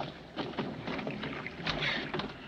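Sea water sloshing and splashing against the side of a small lifeboat, with a few brief splashes as a floating cap is fished out of the water.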